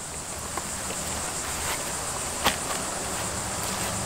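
Steady, high-pitched chorus of insects, with one sharp click a little past halfway.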